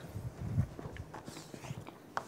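A few faint footsteps of a person walking across the floor, mostly in the first second.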